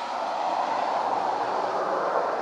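Jet engines of a Boeing 757 on the runway after landing, a steady rushing noise that grows louder as the aircraft passes.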